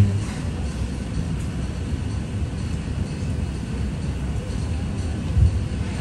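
Steady low rumble of room background noise, with a single dull thump about five and a half seconds in.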